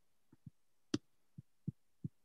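Soft, irregular taps of computer keys, about five in two seconds, the loudest about a second in, picked up by a participant's microphone on a video call.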